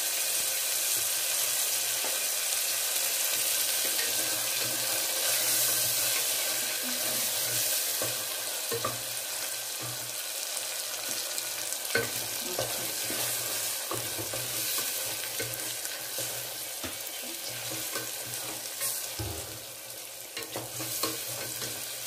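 Chopped tomatoes and onions sizzling in hot oil in an aluminium pressure cooker, stirred with a wooden spatula that knocks against the pot now and then. Steady sizzle with a few sharp clicks of the spatula.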